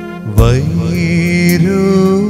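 Malayalam Christian funeral song: sustained keyboard chords, then a man's singing voice comes in about half a second in, sliding up into a long held note over the keys.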